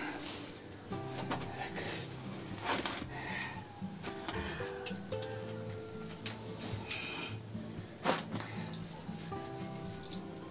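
Soft rubbing and rustling of material being handled, with a couple of sharper knocks, about three seconds in and again near eight seconds, over quiet background music.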